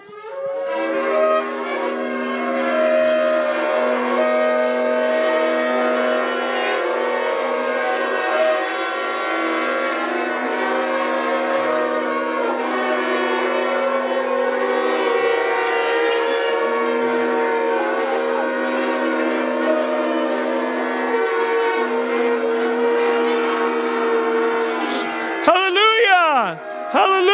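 Several shofars and a long silver trumpet blown together in one long sustained blast, many held notes at different pitches overlapping. It begins about half a second in and stops shortly before the end.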